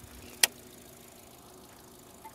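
Hyundai Sonata engine idling faintly and steadily, with one sharp click about half a second in.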